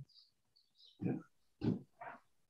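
Two short murmured voice sounds in a quiet room, a brief "yeah" and a grunt-like "mm", about half a second apart.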